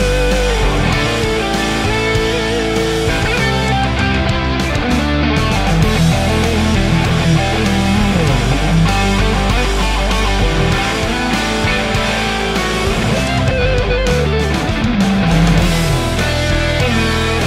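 Rivolta Combinata XVII electric guitar with P90 pickups playing a lead line with bends and slides over a backing track.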